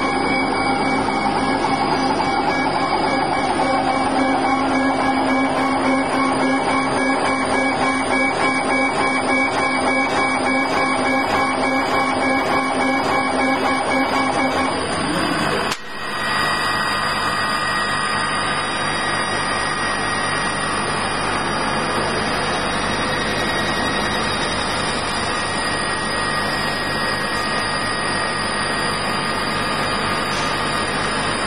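Large flatbed laser cutting machine running while it cuts acrylic: a loud, steady mechanical hum and whir. About halfway through the sound drops out briefly and then resumes with a slightly changed tone.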